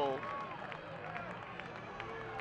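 A man's voice trails off at the start. After that there is only faint outdoor background noise, with a low steady hum and distant indistinct voices.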